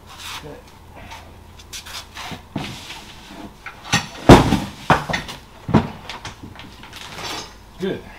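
Metal engine parts and hand tools knocking and clattering on a wooden workbench during an aircraft engine teardown, with a scattering of separate knocks, the loudest about four seconds in.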